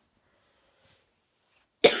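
Near silence, then a sudden loud cough near the end from a boy who has a cold.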